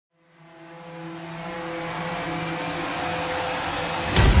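A trailer's opening sound-design swell: a rushing noise over a low held chord, fading in from silence and growing steadily louder throughout.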